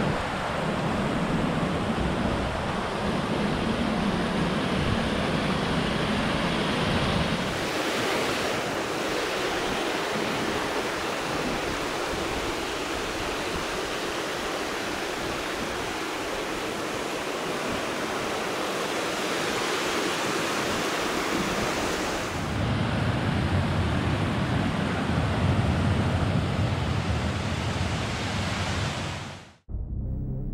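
Mountain river rushing over rocks and small cascades: a steady, loud hiss of flowing water. A deeper rumble joins it for the first seven seconds or so and again from about 22 seconds in, and the sound fades out just before the end.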